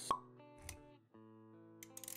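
Intro music with sustained notes and synced animation sound effects: a sharp click just after the start, a second low hit a little past halfway, then a brief drop-out before the notes come back.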